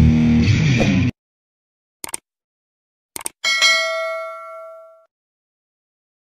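Rock music cuts off about a second in, followed by silence, then two quick pairs of mouse clicks and a bright bell ding that rings out for about a second and a half: the sound effects of a YouTube subscribe-button animation.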